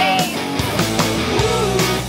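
Rock music with guitar, a steady beat and a sung melody line.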